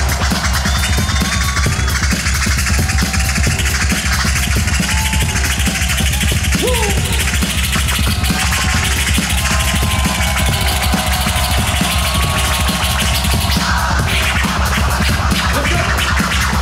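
Hip-hop beat with a heavy, steady bass and turntable scratching over it, played live through a large stage PA.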